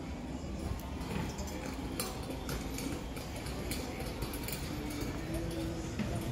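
Background hubbub of a busy clothing shop: indistinct voices over a steady low rumble, with a few sharp clicks and knocks scattered through.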